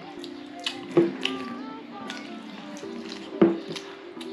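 Background music with long held notes, with a few sharp clicks and knocks. The loudest clicks come about a second in and again near three and a half seconds.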